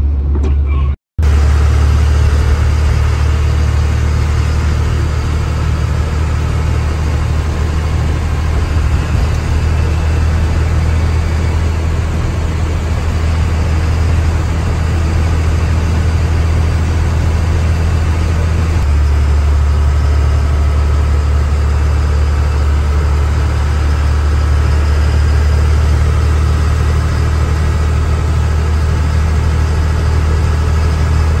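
Steady in-cabin noise of a car driving on a wet, snowy road: a low engine and road drone with tyre hiss. The sound cuts out for a moment about a second in.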